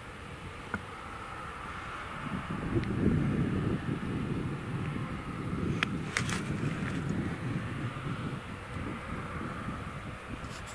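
Fendt 936 tractor and CLAAS Quadrant 5300 FC large square baler working a straw field: a steady engine drone with a high, steady whine over it. It grows louder about two and a half seconds in and eases off toward the end. A few sharp clicks sound around the middle.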